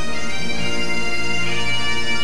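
Background bagpipe music: steady drones held under the melody, with no speech over it.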